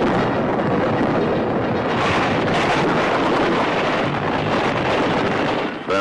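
A loud, steady rushing roar that starts abruptly, with no distinct separate shots or blasts standing out.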